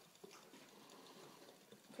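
Near silence with a few faint light ticks from a plastic hamster exercise wheel as the hamster runs in it.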